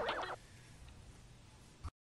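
The warbling tail of a child's voice trails off in the first half second, then near silence with one faint click just before the sound cuts out.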